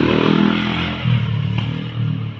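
A motorcycle passing close by, its engine note loudest near the start and dropping in pitch as it goes by.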